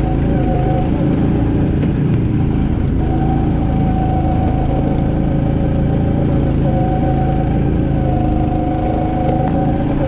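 Go-kart's small engine running steadily under throttle as the kart laps the track, its pitch holding nearly steady with a couple of slight dips.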